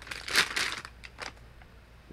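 Plastic wrapping crinkling as a trail camera is pulled out of it, loudest about half a second in, then dying down.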